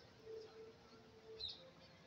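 Near silence: faint outdoor ambience, with one faint, short bird chirp about one and a half seconds in.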